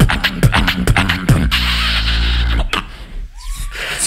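Human beatboxing through a stage microphone and PA: sharp kick and snare clicks over deep bass, then a long held bass hum from about a second and a half in. The bass breaks off near three seconds in, leaving a quieter stretch with a short rising tone.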